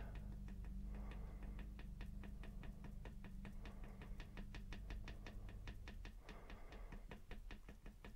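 A paintbrush tapping and dabbing paint onto a canvas in quick, faint taps, about five a second, as it stipples in fir-tree branches. A low steady hum sits underneath.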